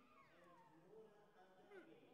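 Near silence in a large hall, with faint, distant voices calling out and a steady low hum.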